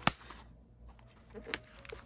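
Frosted plastic sticker folder being handled: one sharp click right at the start, then a few lighter plastic clicks and taps near the end.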